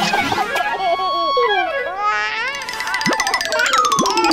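Cartoon background music laced with comic sound effects: quick warbling, wobbling pitch glides, then a long falling slide in the second half.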